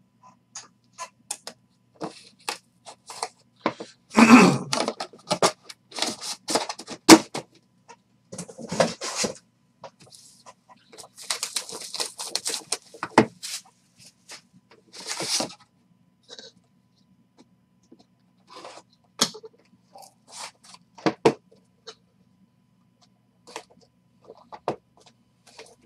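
Handling noise: irregular clicks, taps and short scraping rustles as cards, a plastic one-touch holder and a cardboard pack box are picked up, moved and set down on a table.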